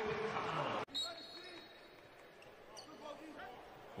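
Basketball game court sound in a sparsely filled arena: ball bouncing and faint voices. About a second in, the sound cuts suddenly to a quieter stretch with a brief high tone.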